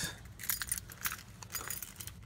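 Car keys jingling: a run of light, irregular metallic clinks as a key ring is handled.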